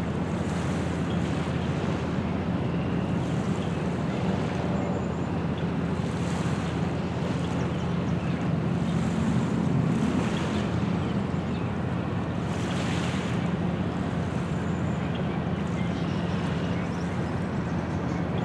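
Small waves lapping at a stony lakeshore in soft washes every few seconds, over the steady low drone of a boat engine on the water, with some wind on the microphone.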